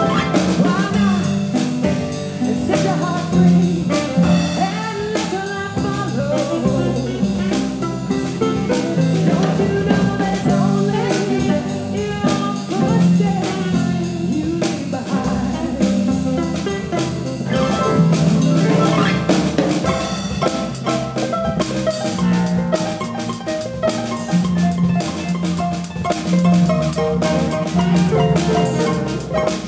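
Live jazz band playing: saxophone carrying a melodic line over concert harp, electric bass guitar and drum kit. The drums and cymbals grow busier in the second half.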